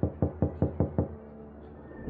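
Knuckles knocking on a door, a quick run of about six raps in the first second, over a faint steady drone.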